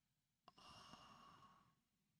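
Near silence, with a man's faint exhale lasting about a second, starting with a small click.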